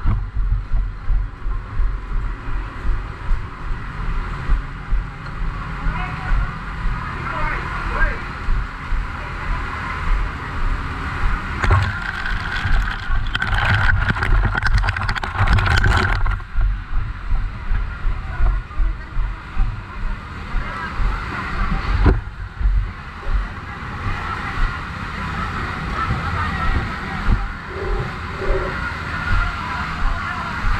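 Hurried footsteps and rumbling camera-handling noise from someone walking fast, with indistinct voices of people around. A denser stretch of rustling and clatter comes about twelve to sixteen seconds in.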